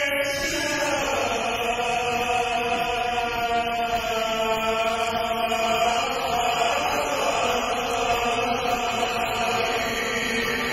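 A large concert audience singing along to a sevdalinka in unison, holding long drawn-out notes, with a slight change of pitch about midway.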